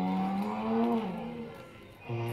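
Recorded dinosaur call played by a life-size long-necked sauropod model: one long, low call that rises slightly in pitch past the middle and fades out about a second and a half in.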